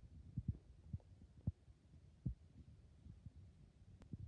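Soft, irregular low thumps, about five in four seconds, over a faint low rumble: handling noise from a handheld camera being moved about close to a plastic lizard enclosure.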